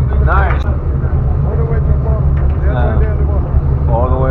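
Fishing boat's engine running with a steady low rumble, with short bits of voices from people on deck.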